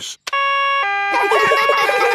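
Cartoon ambulance's two-tone 'nee-naw' siren sounding, alternating a higher and a lower note. Voices join in over it from about a second in.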